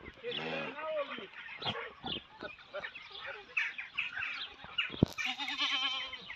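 Goats bleating, with a quavering bleat near the end.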